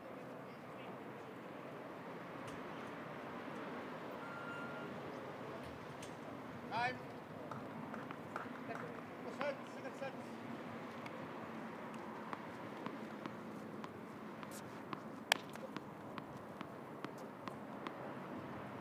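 Outdoor tennis court ambience: faint, distant voices over a steady background hiss, with scattered sharp clicks, the sharpest about fifteen seconds in.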